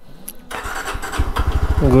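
Yezdi Scrambler's single-cylinder engine running as the motorcycle rolls slowly, its rapid, even firing pulses growing louder through the second half.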